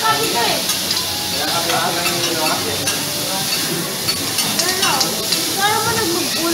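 Diced beef sizzling in its sauce on a steel teppanyaki griddle, with a chef's metal spatulas scraping and tapping against the plate as he stirs it. Voices can be heard in the background.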